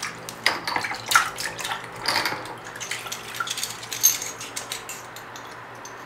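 Hands swishing small metal suppressor baffles around in a plastic bowl of liquid, with irregular splashes and light clinks. The sounds are busiest in the first few seconds and thin out near the end, over a faint steady hum.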